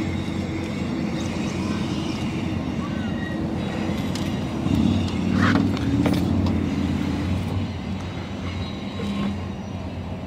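A steady low motor hum, swelling louder for a couple of seconds about halfway through.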